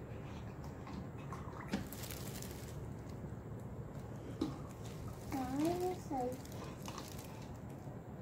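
A doll being dipped and moved in a tall plastic tube of water: a soft splash a couple of seconds in and a few light knocks against the tube. A child makes a short hummed sound a little past halfway.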